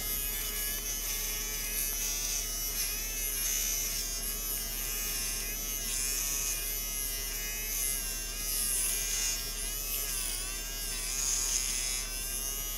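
Cheap USB-rechargeable mini rotary electric shaver running against facial stubble, a steady buzz whose pitch wavers slightly as it is pressed to the skin. It is barely cutting the whiskers.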